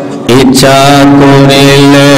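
A man's voice chanting in long, held melodic notes into a microphone. It comes in loudly about a third of a second in and sustains with only small steps in pitch.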